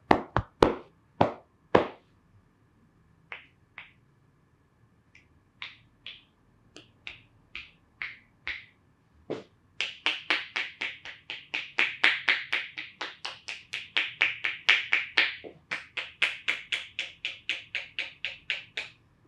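Hands striking a reclining person's body and head in percussive massage: a few sharp slaps at the start, scattered lighter taps, then from about halfway a steady run of quick taps, about four a second.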